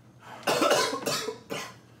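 A man coughing hard: one long rasping cough about half a second in, then a shorter one, his throat burning from extremely spicy ramen.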